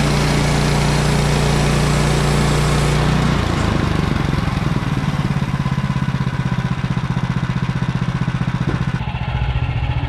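Sawmill's small gasoline engine running steadily at full throttle, then throttled back about three seconds in and settling to an idle with a rapid, even pulse.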